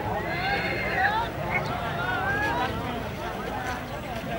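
A horse whinnies in the first second, a high, quavering call, over the steady chatter and shouts of a crowd.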